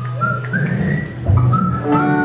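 Live rock band playing: a high, clear, whistle-like lead line climbs in steps over a held bass note. Lower sustained notes come in near the end.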